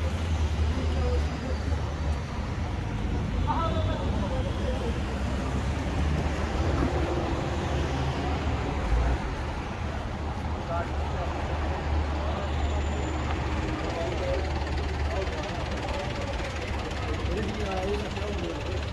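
Street traffic noise: a steady low vehicle engine rumble, with people talking faintly in the background.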